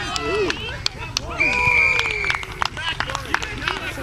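Rugby players shouting and calling out on the field as a try is scored, with a few sharp claps. About a second and a half in, a single long, high whistle blast sounds for just under a second: a referee's whistle awarding the try.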